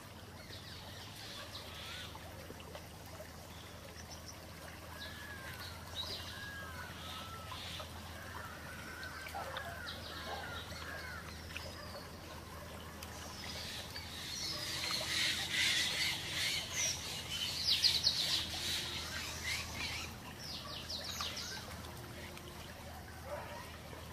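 Birdsong in an ambient music track: many short chirps and calls over a steady low drone, growing louder and busier about two-thirds of the way in.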